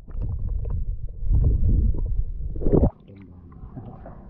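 Muffled rumbling and gurgling of seawater washing over an action camera mounted low on an outrigger boat's hull as it dips under the surface. The rumble cuts off suddenly just before three seconds in, when the camera comes clear of the water.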